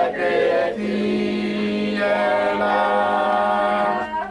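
A congregation singing a hymn together without accompaniment, many voices holding long notes.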